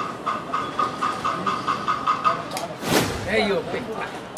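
A rapid, even beeping, about five beeps a second, for about two seconds over voices and background noise, then a brief sharp rush of noise about three seconds in.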